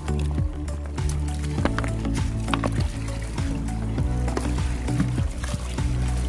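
Background music with a held bass line that changes notes every second or two.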